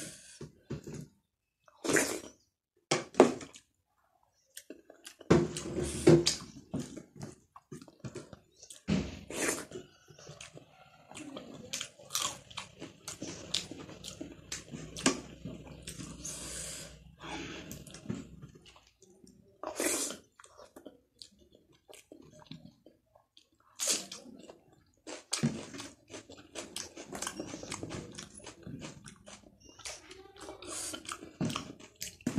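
Close-up eating sounds: wet chewing and mouth clicks of a person eating rice and curry by hand, along with fingers mixing rice on the plate. The sounds come in short, irregular bursts with brief pauses.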